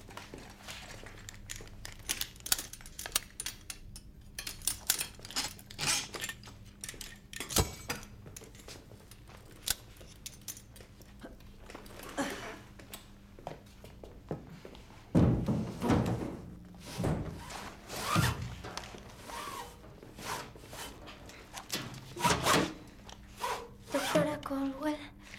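A run of clicks, knocks and thuds from a struggle around a wheelchair as a restrained child is handled and pushed down, with short voice-like sounds in the second half.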